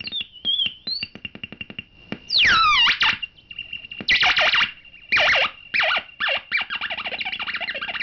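Homemade optical synthesizer with an LFO and low-pass filter making electronic bleeps and chirps: a fast run of clicking pulses for the first two seconds, then tones sweeping steeply downward, then short bursts each dropping in pitch, and a quick string of chirps near the end, over a steady high whine.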